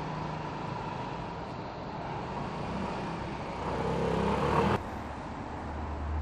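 A motor vehicle running and growing louder as it draws near, cut off abruptly about three quarters of the way through. A lower, steady rumble follows.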